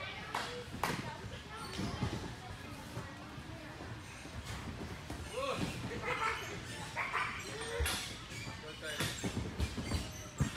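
Background chatter of many children and adults echoing in a large gym hall, with several sharp thuds of gymnasts' feet landing on the beam and mats.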